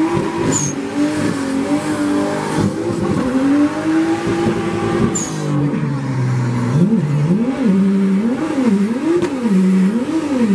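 A car's engine revving hard during a burnout, its pitch climbing and falling. From about seven seconds in it is blipped up and down rhythmically, about once a second, over the hiss of spinning, smoking rear tyres.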